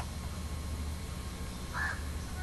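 Steady low electrical hum with faint hiss, and one short faint call about three quarters of the way through.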